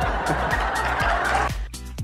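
An audience laughing over background music with a steady beat; the laughter stops about three-quarters of the way through.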